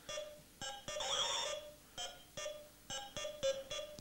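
Electronic buzz-wire game sounding a string of short electronic beeps at irregular intervals, with one longer warbling tone about a second in, as the wand touches the wire track.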